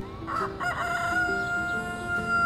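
Rooster crowing over soft background music: a short opening about a third of a second in, then one long held note that is still going at the end.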